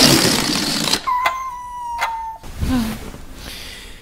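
A released toy balloon deflating. It opens with a sudden loud rush of escaping air for about a second, then a steady high whistle for just over a second that cuts off abruptly.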